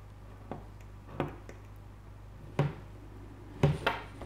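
A scratch awl scribing around a coin on a leather wallet blank to mark a rounded corner: a few short scratches and taps, the loudest about two and a half seconds in and near the end, over a steady low hum.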